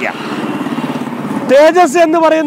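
A vehicle engine running with a fast, even pulse, then a man's voice comes back in at about a second and a half.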